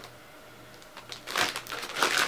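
Clear plastic wrapping on a wax melt package crinkling as it is handled. The irregular crackling starts about a second in and grows louder.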